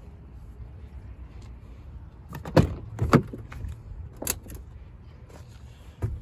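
Door of a 2018 Ford F-250 pickup being opened: two sharp latch clicks about halfway through, half a second apart, then a lighter click a little later.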